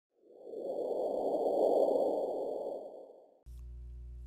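Intro whoosh sound effect under an animated logo: a smooth, noisy swell that builds over about a second and fades away by about three and a half seconds. It then cuts abruptly to a steady low hum.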